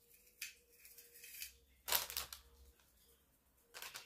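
Gift packaging being handled and unwrapped: a few short rustles, the loudest about two seconds in.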